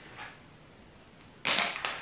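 Makeup products being handled: small plastic cases clicking and rustling, with a faint click near the start and a louder burst of handling noise about one and a half seconds in.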